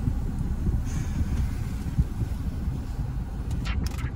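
Steady low rumble inside a car's cabin, with a few short clicks near the end.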